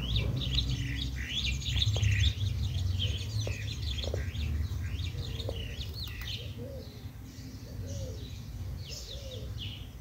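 Background birds chirping busily, many short high chirps overlapping, with a few lower wavering calls in the second half. A steady low hum runs underneath.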